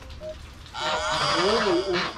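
Domestic geese honking at close range, starting about a third of the way in and continuing loudly to the end.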